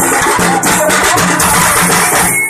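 Tappu melam music: a fast, dense rhythm of thappu frame drums, with a sustained melody line over it.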